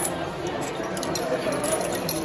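Steady background noise of a subway station concourse with faint distant voices, and a single click from the ticket machine right at the start.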